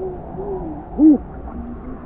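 Muffled water movement around a camera dipped in a shallow stream, with two short hooting tones that rise and fall in pitch; the louder one comes about a second in.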